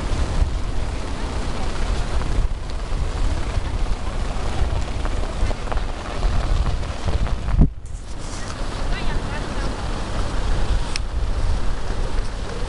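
Strong wind buffeting the microphone, a steady low rumble that briefly drops out about two-thirds of the way through.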